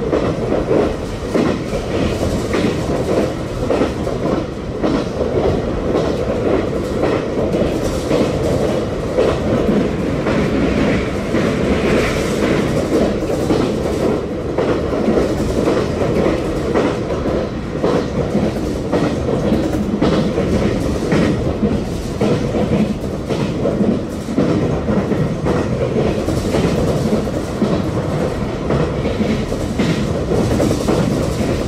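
Running noise of a JR Kyushu 817-series electric train heard from inside the carriage: a steady rumble of wheels on track with the clickety-clack of the rail joints.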